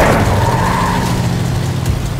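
Car tyres squealing over a steady low engine hum. It starts suddenly and loud, then fades as the car speeds off.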